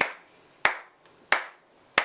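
A man clapping his hands to keep a steady beat: single sharp claps evenly spaced, about one every two-thirds of a second.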